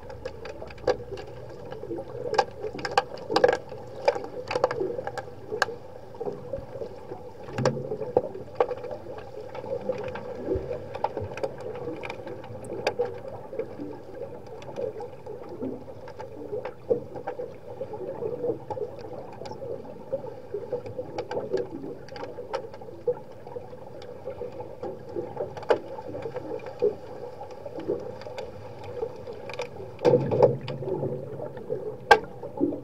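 Underwater hockey heard through a submerged camera: a steady hum with many sharp clicks and knocks scattered through it, from sticks and puck striking as players fight for the puck on the pool floor.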